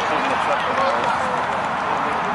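Many overlapping voices of young players and sideline spectators calling out at once, none clear, over a steady outdoor hiss.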